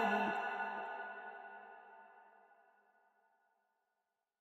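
The long echoing tail of a man's chanted Quran recitation, his last note ringing on and fading away over about two seconds.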